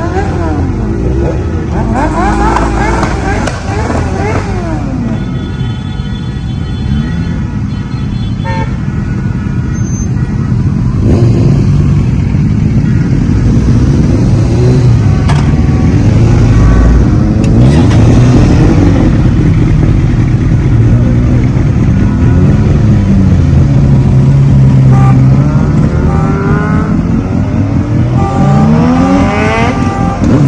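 A group of motorcycles idling and revving, their engine pitch rising and falling again and again. A horn sounds steadily for a few seconds, starting about five seconds in.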